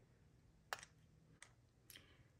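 Three faint clicks, about two-thirds of a second apart, from the push buttons of a Faradbeauty LuxeHalo LED mask's handheld controller being pressed to switch the mask on and step through its settings.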